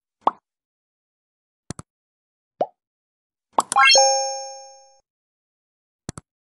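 Animated subscribe-button sound effects: a soft pop, a quick double click, another pop, then a fast rising run of notes ending in a bright chime that rings out for about a second.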